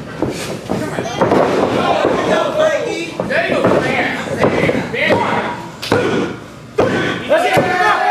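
A wrestler slammed onto the ring mat about three seconds in, with voices shouting. Near the end come three sharp slaps about a second apart: the referee's hand hitting the mat for the pin count.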